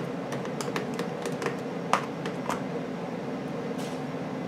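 Scattered light clicks and ticks of a small precision screwdriver working screws out of a plastic laptop bottom case, with a couple of sharper clicks about two seconds in.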